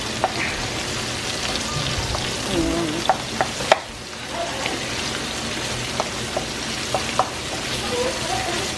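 Ground chicken frying in bacon fat with onion and garlic in a wok: a steady sizzle, with the spatula clicking and scraping against the pan as the meat is stirred and broken up.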